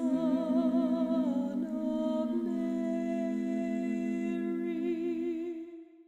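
Layered a cappella female voices singing wordlessly in close harmony, holding long notes with vibrato. The chord fades out near the end.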